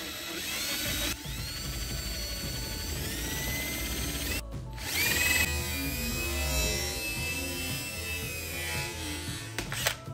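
DeWalt cordless drill driving a quarter-inch twist bit through an aluminum T-track. The motor whine rises in pitch as it speeds up, stops briefly about halfway through, then runs steadily again and winds down near the end.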